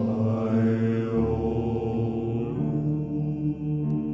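Slow, chant-like vocal music: voices hold long, low notes, moving to a new chord about a second in and again near two and a half seconds.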